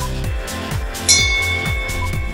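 Electronic workout music with a steady kick-drum beat and a short pip about once a second. About halfway through, a bright bell-like chime rings out and hangs on, the interval timer's signal that the work interval is over and the rest begins.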